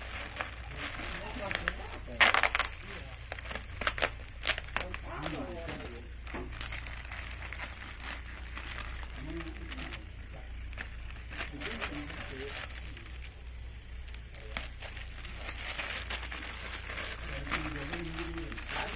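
Clear plastic bag crinkling and rustling as it is cut and pulled open by hand, with many short sharp crackles and the loudest burst of rustling about two seconds in.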